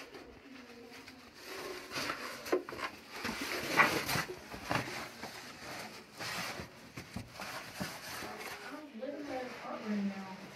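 Cavers scrambling down a tight rock passage: irregular scrapes, scuffs and knocks of clothing, gloves and boots against rock and mud, the loudest scrape about four seconds in, with low voice sounds from the climbers and a small-room echo.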